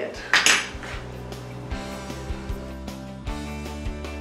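A metal fork scraping and clinking against a small glass bowl of beaten egg wash about half a second in, then background music with a steady beat.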